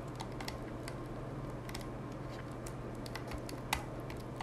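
Faint, irregular soft ticks from the front side thumb button of a Logitech G Pro Wireless mouse being pressed repeatedly, one slightly louder near the end. The button barely clicks even though it is being pressed, which is the factory defect.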